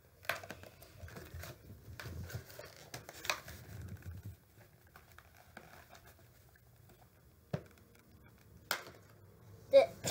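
Cardboard doll box and clear plastic packaging tray being handled and pulled apart, crinkling and rustling with a run of small clicks over the first few seconds. A few separate sharp snaps follow near the end.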